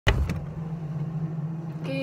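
A refrigerator door pulled open with a sharp click at the start, then the fridge's steady low hum.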